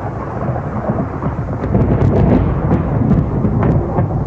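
Thunderstorm: a continuous low rumble of thunder with rain, starting abruptly.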